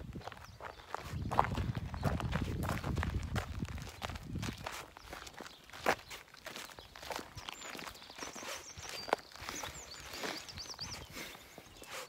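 Footsteps of two people walking on a gravel path, irregular steps with a few sharper clicks among them.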